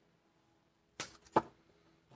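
Two short, sharp clicks about half a second apart, the second louder, from a deck of tarot cards being handled; otherwise near silence.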